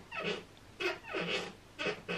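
A woman's wordless vocal sounds: three short, drawn-out, sliding noises, which the recogniser did not write down as words.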